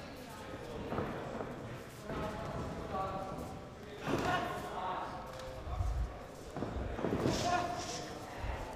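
Raised voices calling out in short bursts in a large, echoing hall, with a few dull thuds.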